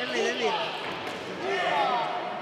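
Men's voices calling out from ringside during a kickboxing bout, with dull thuds from the fighters in the ring.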